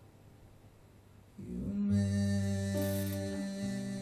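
Acoustic guitar coming back in after a near-quiet moment: about a second and a half in, strummed chords start ringing, and the chord changes twice.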